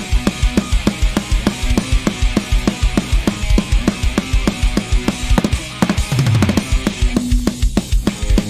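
Instrumental stretch of a loud rock song, with fast, steady drumming under a dense band sound. About a second before the end the upper layer drops out, leaving the drums and a held low note.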